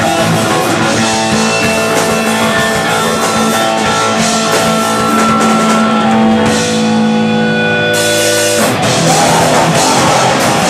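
Hardcore punk band playing live: electric guitars, bass and drum kit. About eight seconds in, the cymbals come back in and the guitars shift into a new part.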